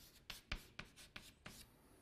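Faint writing on a lecture board: a quick, irregular run of short scratches and taps as an equation is written out.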